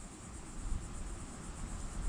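Faint steady background hiss (room tone) with no distinct sound event.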